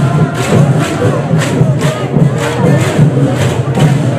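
Live Bihu music: dhol drums and cymbals beating a fast, even rhythm of about four strokes a second, with voices singing and calling out over it.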